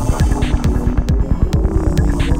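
Psytrance dance music with a fast pulsing bass line and held synth tones.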